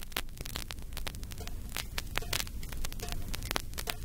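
Surface noise of a crackly 1970 vinyl single playing its lead-in groove: many irregular clicks and pops over a steady low hum.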